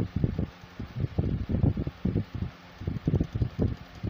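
Moving air from a ceiling fan buffeting the phone's microphone: irregular low rumbles, several a second, over a steady fan hum.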